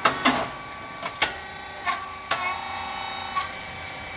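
Rice cake machine running with a steady faint hum, and about six sharp metallic clicks at irregular intervals.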